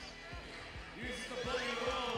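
Basketball being dribbled on the court: a run of dull bounces, under faint crowd voices and background music.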